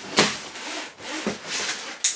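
Cardboard shipping box being opened by hand: a sharp rip just after the start, then uneven rasping and scraping on the cardboard.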